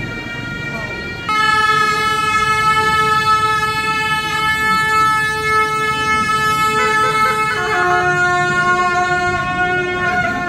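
A pair of gyaling, Tibetan double-reed shawms, playing long held notes. They get much louder a little over a second in, and the melody steps down to a lower note about three-quarters of the way through.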